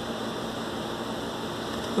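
Steady, even background hiss of room noise, with no distinct sounds in it.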